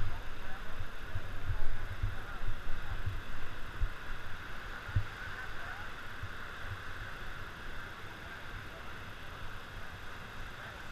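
Wind buffeting the microphone in uneven gusts, heaviest in the first few seconds, over a steady outdoor hiss.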